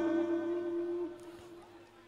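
A man's singing voice holds a long note with a slight vibrato and trails off about a second in, leaving near quiet.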